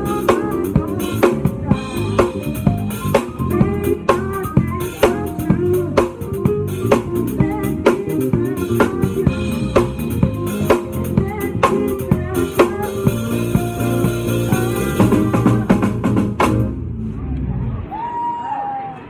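Live band music led by an acoustic drum kit: kick, snare and cymbals keep a steady beat of about two hits a second under sustained pitched instruments. The music stops suddenly near the end.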